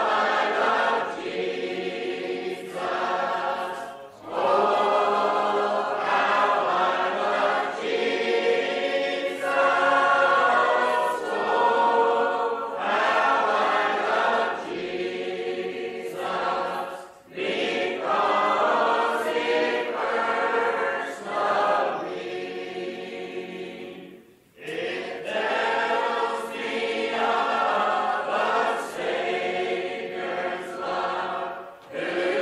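Primitive Baptist congregation singing a hymn a cappella, heard on an old cassette-tape recording. The singing breaks briefly between lines, about 4, 17 and 24 seconds in.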